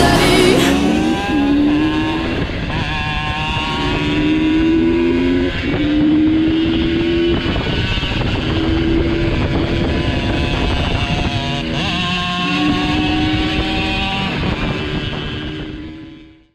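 Supermoto motorcycle engine heard from onboard, pulling hard: its pitch climbs steadily, then drops back at each gear change, several times over. The sound fades out just before the end.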